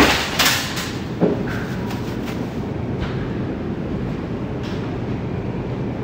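Wire shopping cart rolling across a hard supermarket floor: a steady rumbling rattle of its wheels and frame, with a few knocks in the first second or so.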